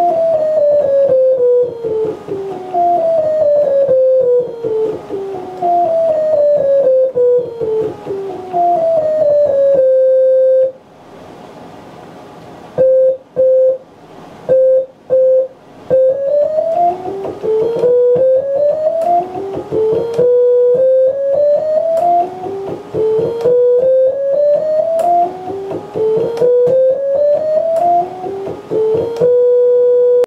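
Analog modular synthesizer playing a Shepard scale from the keyboard. For the first ten seconds a quick chromatic run of stepped tones, two voices an octave apart crossfading, seems to fall endlessly. After a short gap and four brief repeated notes, the same patch plays an endlessly rising Shepard scale.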